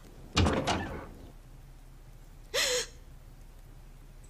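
A wooden door bangs: a short cluster of knocks lasting about half a second, loudest at the first. About two and a half seconds in comes a woman's brief vocal sound that falls in pitch.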